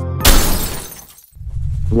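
A sudden, loud shattering crash sound effect about a quarter second in, fading away over about a second. A low rumble starts just after it.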